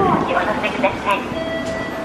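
Subway station ambience: voices in the first second, then a steady whine of several tones holding on from about two-thirds of the way through.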